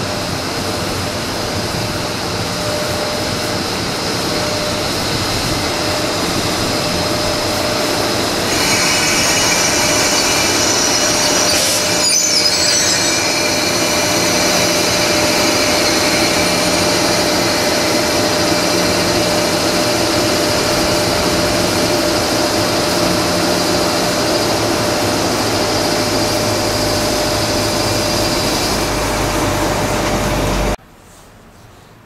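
Freight train hauled by a JR EF66 DC electric locomotive moving slowly, with steady running noise and a hum. High-pitched squealing tones join about nine seconds in and fade near the end.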